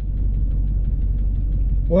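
Pickup truck engine idling, heard inside the cab as a steady low rumble.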